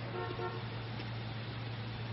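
Two short toots of a car horn in quick succession, over a steady low hum.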